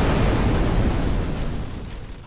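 Explosion sound effect dying away: a deep blast that fades steadily and is much quieter by the end.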